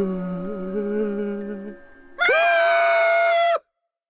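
A cartoon character's drawn-out vocal sound: a low wavering voice, then a loud, held high yell that cuts off abruptly about three and a half seconds in, over faint background music.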